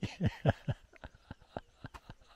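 A man laughing: a quick run of short chuckles, loudest in the first half second, then tailing off into faint clicks.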